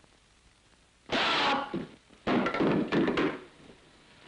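Karate demonstration: a short sharp shout about a second in, then a longer run of heavy thuds and knocks from the blow landing.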